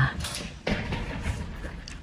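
Stainless steel swing door being pushed and swinging, with a single knock about two-thirds of a second in and some low rumbling handling noise.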